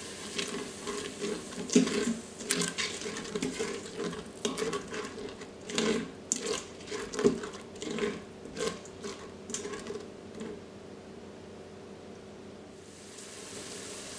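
Silicone spatula stirring and scraping sofrito around a stainless steel Instant Pot inner pot, in many short strokes, over a faint sizzle from the sauté setting. The stirring stops about ten seconds in, leaving only the quiet sizzle of the simmering sofrito.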